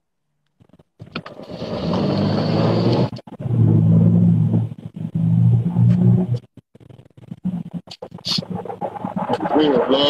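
Muffled, unintelligible voices over the rumble of a car interior, coming in three stretches, then choppier sounds until clear speech returns near the end.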